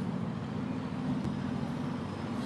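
Boat engine running steadily with a low, even rumble.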